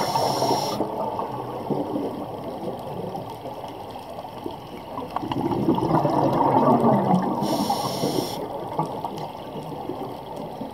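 Scuba regulator breathing heard underwater: a short hiss of an inhaled breath at the start and again about eight seconds in, and a rush of exhaled bubbles swelling in between, from about five and a half seconds.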